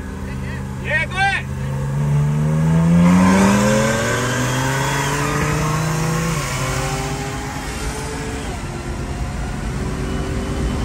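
Supercharged 6.2-litre V8 of a second-generation Cadillac CTS-V accelerating hard at full throttle, heard from inside the cabin. The engine pitch climbs from about a second and a half in and is loudest around three seconds. It keeps pulling through the gears, then drops back after about six and a half seconds.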